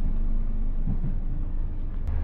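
Steady low rumble of a moving intercity passenger coach heard from inside the cabin: wheels and running gear on the track, with a faint steady hum above it.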